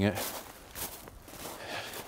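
Footsteps of a person walking through a thin layer of snow on a stubble field.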